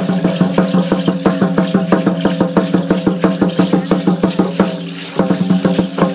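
Aztec dance drumming: a drum beaten in a fast, steady rhythm, with the dancers' seed-pod ankle rattles shaking along. The beat breaks off briefly about five seconds in, then picks up again.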